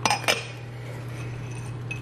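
Small white ceramic ramekins clinking against each other and the counter, a quick cluster of about three clinks right at the start, as one is set down and another picked up. A steady low hum runs underneath.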